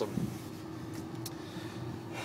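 Steady low road and engine noise inside a car's cabin, with a faint click a little after a second in.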